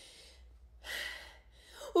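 A person's short, breathy gasp about a second in, after a fainter breath at the start.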